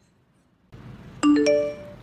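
Message notification chime: two quick notes, the second higher, ringing out briefly a little past the middle and fading within about half a second.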